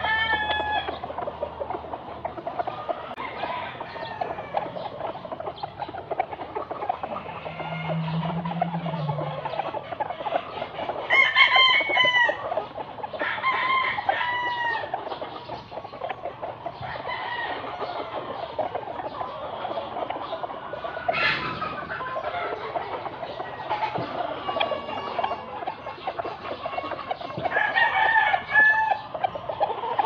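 Gamecocks crowing from several spots around the yard, with clucking between. The loudest crows come about eleven and twenty-eight seconds in.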